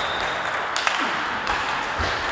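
Table tennis balls clicking against tables and bats: a handful of sharp, irregularly spaced ticks from rallies on several tables.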